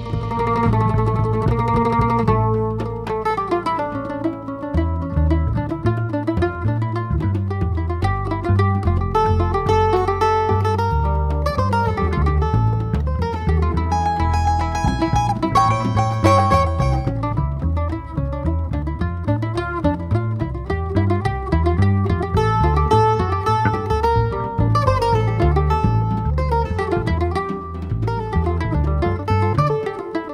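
Live instrumental choro trio: a bandolim (Brazilian mandolin) plays the melody of a Spanish-flavoured waltz over a plucked upright double bass and a drum kit with cymbals.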